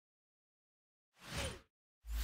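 A short whoosh sound effect of an animated logo intro, lasting about half a second a little past the middle.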